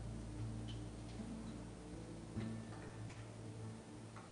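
Quiet live band music: low held notes with a few sparse plucked notes over them.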